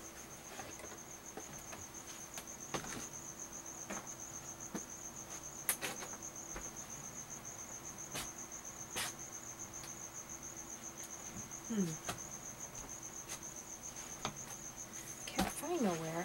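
A steady, high-pitched, evenly pulsing trill over a faint low hum, with scattered faint clicks and knocks from things being moved off to the side.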